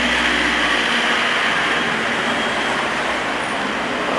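Steady street traffic noise, with the low rumble of a passing vehicle fading out about a second in.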